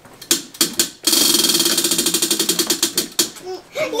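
A tabletop prize wheel spinning, its clicker flapper ticking rapidly against the pegs, then slowing to a few spaced clicks as the wheel comes to rest. A child starts shouting right at the end.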